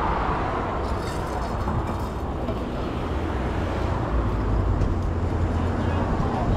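Street traffic noise: a steady low rumble of vehicle engines under a general roadway hiss.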